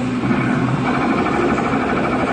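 Arcade din: electronic music and sound effects from many game machines overlapping, with a rapid pulsing jingle starting about a second in.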